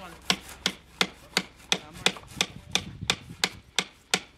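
Repeated sharp strikes of a tool on wood, at a quick even pace of about three blows a second.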